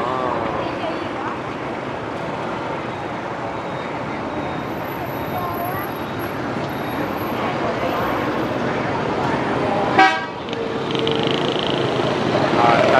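Steady motorbike and car traffic on a busy city street, with faint voices. About ten seconds in a horn gives a sharp, loud beep, followed by a fainter horn held for over a second.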